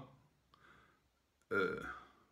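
A man hiccups once, a sudden voiced burst about one and a half seconds in, with a fainter throat sound shortly before it.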